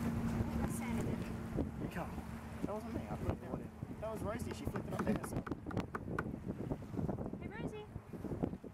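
Quiet, unclear voices talking over wind noise on the microphone, with a steady low hum that stops about five seconds in.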